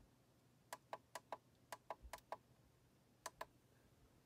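Faint clicks of a computer monitor's push buttons, pressed about five times to step through its input-source menu. Each press gives a quick double click.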